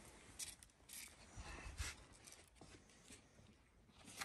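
Near silence: faint scattered rustles and light scrapes, with a couple of soft low thuds, as a torn paper label strip is handled and picked up off a tiled floor.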